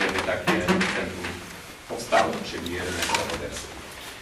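Indistinct talk from people in a meeting room, with a few small knocks among it.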